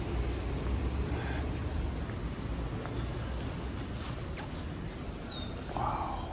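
Steady low street rumble, with a few short, high, falling chirps from a small bird about four and a half seconds in.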